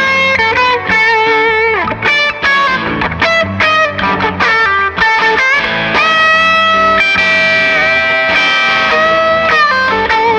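Fender Player Plus Stratocaster played through a 100-watt valve amplifier: a single-note lead line with quick runs and bends, then long sustained notes with vibrato in the second half.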